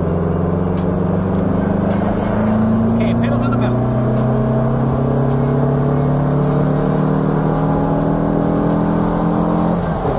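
Volkswagen Beetle's air-cooled flat-four engine pulling under load, heard from inside the cabin. Its pitch rises steadily as the car accelerates in gear, then drops sharply near the end. The clutch is holding without slipping, though the driver judges it right at the edge of slipping.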